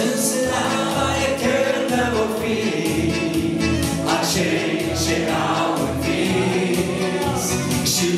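Christian worship song sung by a man and a woman on microphones, with a group of men joining in as a choir, over instrumental backing with a steady low beat.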